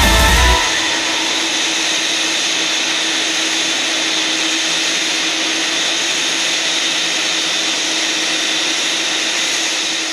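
Jet engines of a twin-engine widebody airliner running steadily at taxi power: an even rushing whine with a constant low tone under it. It comes in as music cuts off about half a second in.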